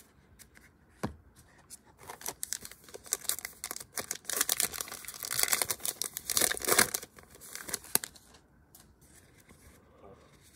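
Plastic wrapper of a trading card pack being torn open and crinkled by hand: a crackly tearing from about two seconds in until about eight seconds, loudest in the middle, after a single click about a second in.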